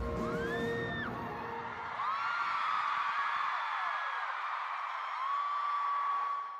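Arena concert crowd screaming and cheering, with high-pitched shrieks and whoops. Music with a heavy beat plays underneath and stops about two seconds in, leaving the crowd's screams on their own.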